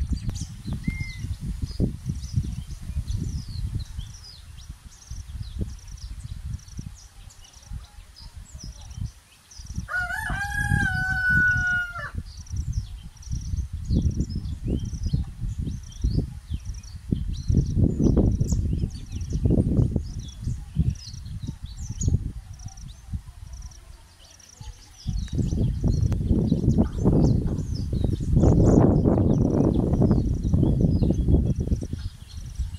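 Wind buffeting the microphone in gusts, heaviest near the end, with faint high bird chirps throughout. A rooster crows once, about ten seconds in: a single call of about two seconds that rises at the start and then holds.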